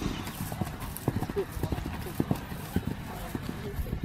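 A horse's hoofbeats on grass as it trots: a run of short, irregular thuds.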